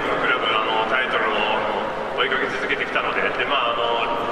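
A man's voice talking over a stadium public-address system, echoing, with a steady crowd murmur underneath.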